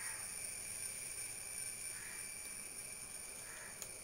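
Quiet background: a steady hiss with thin, high, steady tones, a few faint short calls, and a single sharp click near the end.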